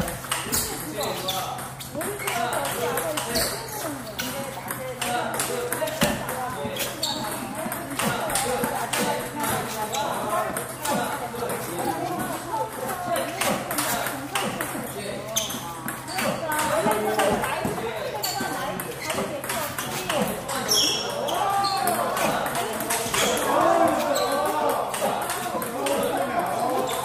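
Table tennis rally: a ball clicking off rubber-faced paddles and the table in a run of sharp, irregularly spaced clicks during forehand drive practice. Indistinct voices carry on underneath in the hall.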